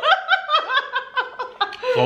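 A woman laughing: a quick run of short, high-pitched laughs, each one falling in pitch, about four or five a second.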